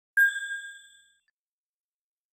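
A single bright, bell-like ding that is struck once and rings out, fading away within about a second. It is a chime sound effect for the brand logo.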